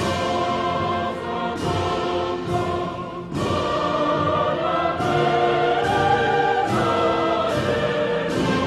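Orchestral music with a choir singing held chords, swelling louder a little after three seconds in.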